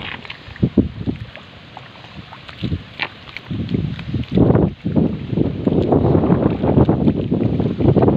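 Wind buffeting the microphone in gusts, growing stronger and denser from about four seconds in, over the sloshing and squelching of feet and hands working in wet paddy mud.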